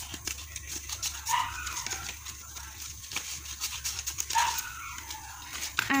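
A dog barking a few times in the background, with the loudest barks about a second and a half in and again near four and a half seconds. Between them are light clicks and rustles of paper being handled and cut with scissors.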